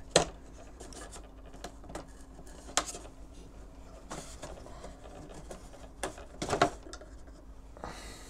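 Hands working the top wing of a foam RC biplane free of its mounting pins: scattered small clicks and knocks with light rubbing of foam and plastic. The loudest click comes right at the start, a sharper one nearly three seconds in, and a short cluster about six and a half seconds in, over a faint steady hum.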